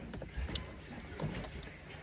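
Small plastic clicks and handling sounds as a wiring-harness connector is lined up and pushed onto the back of a boat's rocker switch. The sharpest click comes about half a second in.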